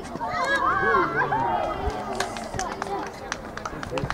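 Several voices shouting over one another, many of them high children's voices, loudest in the first couple of seconds, with a few sharp knocks among them.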